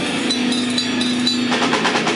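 Live heavy metal band, loud and distorted: the guitars hold a low sustained chord, then the drums come in with rapid hits about one and a half seconds in.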